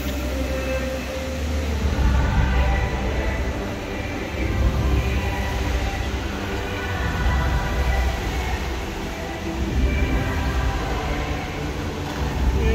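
Dubai Fountain's water jets spraying: a steady rumbling rush that swells and eases, with faint held musical notes underneath.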